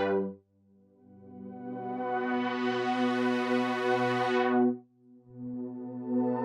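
A sustained synthesizer chord from a chill-out track played through a FabFilter Volcano 2 low-pass filter whose cutoff an LFO sweeps from low to high. The tone brightens steadily over about four seconds, then goes dull suddenly as the LFO steps back down, and starts to open again near the end.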